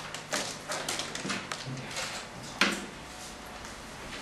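Sheets of paper being handled and rustled, with small clicks and knocks, the loudest a sharp knock about two and a half seconds in; after that it settles to quiet room noise.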